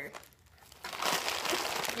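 Crinkling plastic snack packets and wrapped candies being handled and lifted out of a cardboard box, starting about a second in after a brief lull.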